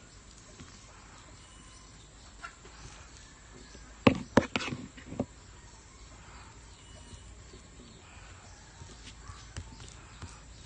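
Faint steady outdoor background with a quick run of four or five sharp clicks and knocks about four seconds in.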